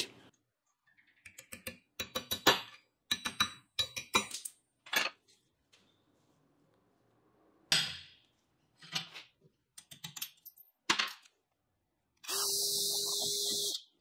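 Ball-peen hammer tapping on steel, a run of sharp metallic strikes in two bursts. Near the end comes about two seconds of steady noise with a low hum.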